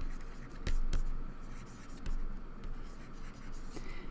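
Stylus writing on a tablet screen: faint scratching strokes with a few sharp taps.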